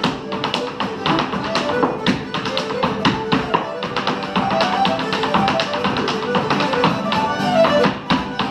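Irish step dancing: rapid taps and clicks of dance shoes striking a wooden floor, in time with a lively Irish dance tune.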